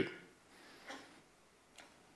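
A lull in speech: faint hall room tone with a couple of soft ticks, one about a second in and one near the end.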